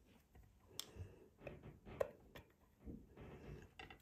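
Faint, scattered light clicks and taps of thin clear plastic tubs being handled, one tipped over the rim of the other to let a spiderling drop in.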